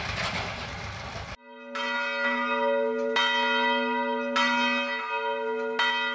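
Small tractor engine running for the first second or so, cut off abruptly by a church bell tolling. The bell is struck about six times at uneven intervals, each stroke ringing on into the next.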